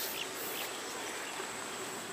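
Insects buzzing steadily at one high pitch over a faint even background hiss.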